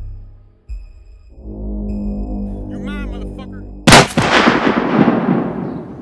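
A single loud gunshot about four seconds in, with a long echoing tail that dies away over about two seconds. Before it, a low drone of film-style music follows a low hit just under a second in.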